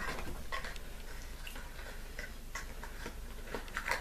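Faint scattered clicks and light taps from a small plastic eyeshadow pot being handled, with a sharper click at the start.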